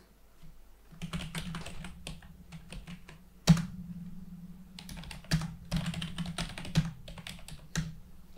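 Typing on a computer keyboard: a quick, irregular run of key clicks, with one louder click about three and a half seconds in.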